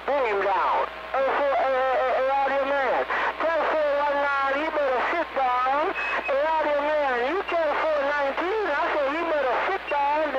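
Speech received over a CB radio, talking without pause through a narrow, thin radio sound band with a faint low hum underneath.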